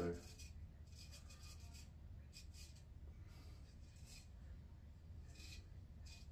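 Faint scraping strokes of a full-hollow straight razor cutting through lathered beard stubble, about four short strokes. The edge is one the shaver calls a little toothy.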